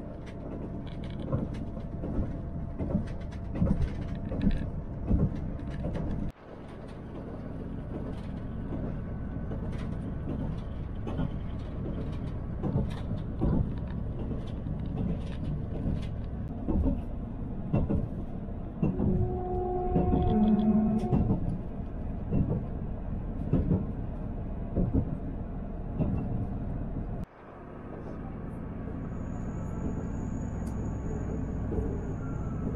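Small diesel passenger train running, heard from inside the carriage: a steady low rumble with irregular knocks and clatter from the wheels on the track. The sound breaks off abruptly twice and fades back in, and a brief pitched tone sounds about two-thirds of the way through.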